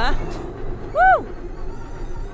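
Extreme E electric SUV driving on a gravel track, with a steady rush of tyre and road noise. About a second in, the driver gives a short exclamation whose pitch rises then falls.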